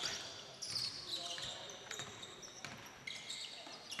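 Faint basketball game sounds on a gym's hardwood court: a ball bouncing, with short high-pitched sneaker squeaks about half a second in and again near the three-second mark.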